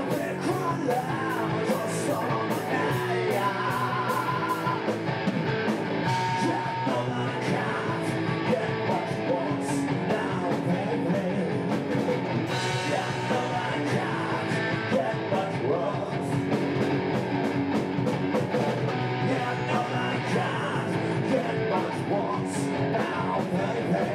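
Live rock band playing: electric guitars, bass and a drum kit with crashing cymbals, with a singer's vocals over the top. The music is steady and continuous, with no break.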